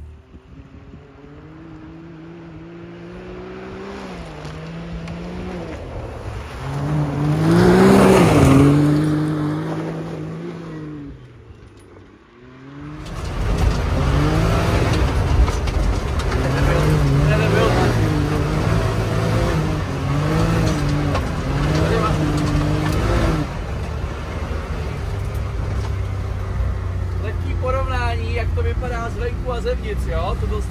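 Can-Am Maverick side-by-side's V-twin engine. It comes closer, loudest about eight seconds in, and fades away by about twelve seconds. Then, heard close up from on board, it revs up and down over and over as it is driven hard, running steadier in the last few seconds.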